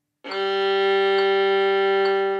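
Violin's open G string bowed as one long, steady note in straight, even bowing, starting about a quarter of a second in. A soft tick falls on each beat.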